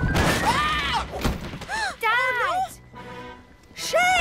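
Cartoon crash sound effect, a noisy thud and clatter in the first second as the runaway trolley goes off the harbour edge. Music with rising-and-falling pitched sweeps plays over it, then it quiets briefly before the end.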